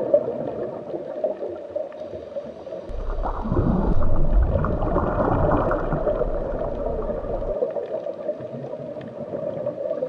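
Underwater ambience: a steady muffled water sound with gurgling, swelling into a louder, deeper rumble for a few seconds in the middle.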